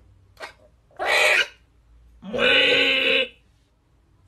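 A conure giving three loud, harsh screeching calls: a short one, then two longer ones, the last lasting about a second.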